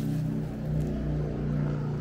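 Steady drone of an engine running, with a low pitched hum whose pitch dips slightly about half a second in and then holds.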